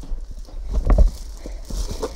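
Clear plastic wrapping rustling and a boxed guitar case knocking as it is pulled out of its packaging, with a cluster of knocks a little before the middle and rumbling thumps from a handheld phone being moved close by.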